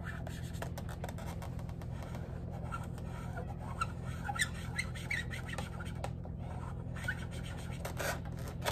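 Marker pen drawing on a latex balloon: short squeaks and scratchy strokes of the tip on the rubber, over a steady low hum.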